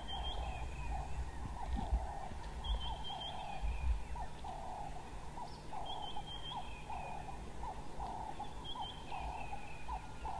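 Outdoor bush ambience. A low pulsed animal call repeats about once a second, and a high bird call with a short falling tail comes back every three seconds or so. A low rumble runs underneath.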